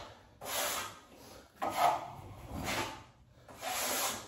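Wide steel drywall knife dragged across a wall, spreading a skim coat of joint compound over textured drywall: about three long scraping strokes with short pauses between.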